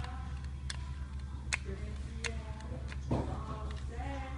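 A few sharp clicks, roughly one every three-quarters of a second, over a steady low hum.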